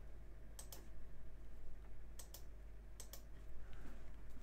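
Three short double clicks of buttons being pressed, spaced roughly a second apart, over a faint steady low hum.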